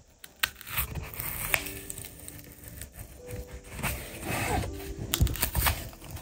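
Cardboard side flange of a filament spool being pried up and peeled away from the coil: cardboard tearing and scraping, with a few sharp clicks.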